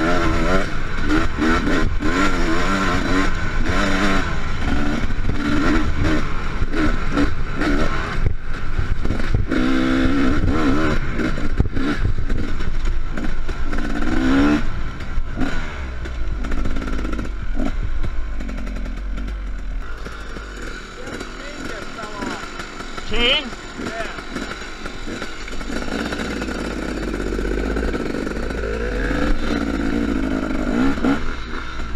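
2015 KTM 250 SX two-stroke dirt bike engine heard from onboard, revving up and falling off again and again while riding. It runs more quietly and steadily from about halfway, with one short rising whine near the end.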